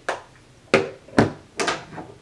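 A few short clicks and knocks of small makeup items, a plastic compact among them, being put down and handled on a desk.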